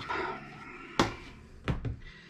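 Plastic casing of a Fritz!Box Fon WLAN modem clicking as its top shell is pulled off the base. There is a sharp click about a second in and a second, softer double knock near the end.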